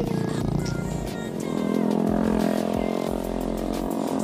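A motorcycle engine running, growing louder about a second and a half in, under background music.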